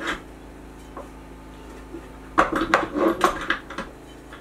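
Metal clicking and clattering as a 600 mm lens's long foot is fitted into an Arca-Swiss clamp on a frying-pan ground pod: one click at the start, then a quick run of knocks and clicks over the last second and a half.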